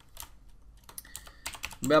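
Typing on a computer keyboard: a quick run of separate keystroke clicks as a line of code is typed.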